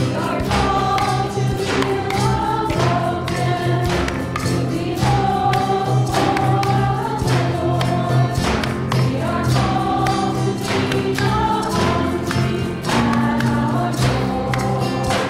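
A choir sings a hymn with instrumental accompaniment over a steady beat, as a processional hymn at the opening of a Catholic Mass.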